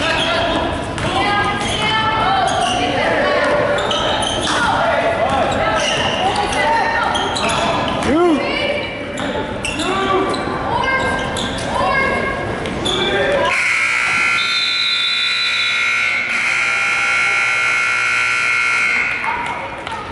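Gym game noise, with sneakers squeaking on the hardwood, a ball bouncing and spectators' voices. About two-thirds of the way in, the scoreboard horn sounds one steady blast of about five seconds, signalling the end of the half.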